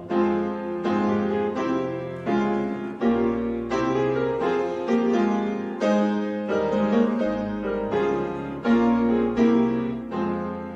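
Piano playing an instrumental passage of a hymn between the choir's sung verses: full chords struck about one and a half times a second, each ringing on and fading before the next.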